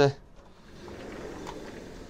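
Interior hotel window frame being pulled open by hand: a faint, steady rubbing noise that starts about half a second in.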